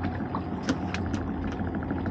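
Small boat's outboard motor idling, a steady low hum, with a faint fast ticking and three light clicks in the first second or so.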